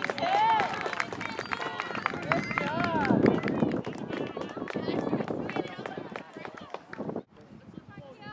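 Small crowd of spectators and players cheering and yelling over each other, with scattered clapping; the noise drops away suddenly about seven seconds in.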